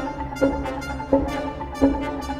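Live percussion-and-orchestra music: the percussionists bring tall wooden poles down in unison three times, about 0.7 s apart. Each stroke is a sharp strike followed by a ringing low pitched tone, over sustained orchestral sound.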